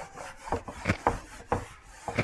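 A handheld eraser rubbed across a whiteboard in quick wiping strokes, about four strokes in two seconds, each a short scraping rub.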